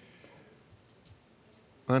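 Quiet room with a few faint, sharp clicks, then a man's voice begins speaking near the end.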